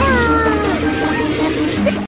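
Several soundtracks overlapping at once: music with steady tones, and right at the start a long pitched call, like a meow, that glides downward for under a second.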